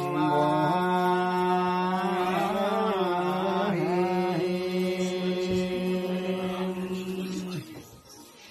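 A man's voice chanting one long, held note in a ritual chant, wavering in an ornamented stretch in the middle and breaking off shortly before the end.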